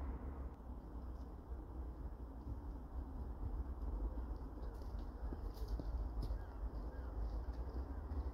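Quiet outdoor background with a steady low rumble and faint bird chirps, and a few light footsteps on a path in the second half as someone walks up.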